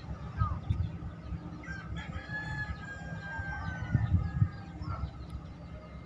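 A rooster crowing: one long held call of about two seconds that drops slightly in pitch at its end, over a steady low rumble.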